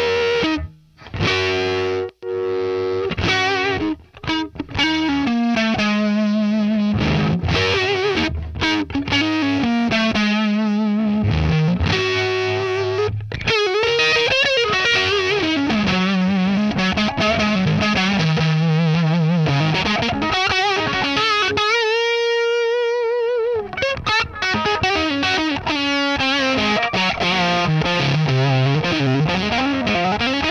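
Electric guitar played through a Marshall Studio JTM valve head turned right up into a Soldano 2x12 cabinet: overdriven riffs and single-note lines, with a long held note with wide vibrato about two-thirds of the way through and bent notes near the end. The player feels the amp is not handling that volume well.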